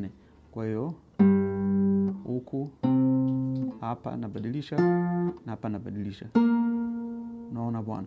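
Cutaway acoustic guitar playing four single notes, each plucked separately and left to ring for about a second. The notes are shown as matching octave positions of the same note on the fretboard.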